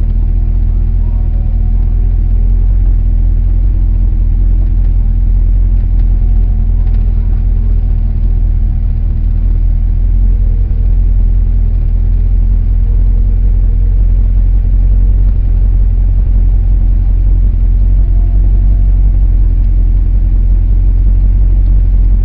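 An older car's engine running steadily as the car rolls slowly along, heard from inside the cabin as a loud, even low rumble with a steady hum.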